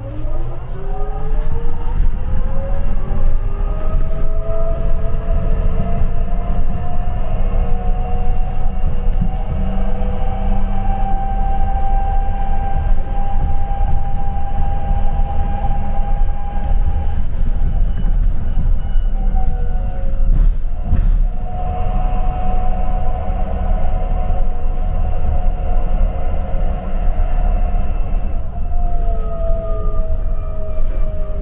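Shuttle bus drivetrain whine heard from inside the bus, rising in pitch as the bus pulls away and speeds up, holding steady at cruising speed, then falling near the end as it slows, over constant road rumble. The whine dips briefly about two-thirds of the way through, with a short knock.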